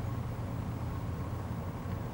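Engine of a sand-scraping machine running steadily as it scrapes the dirty top layer of sand off a slow sand filter bed: a low, even drone.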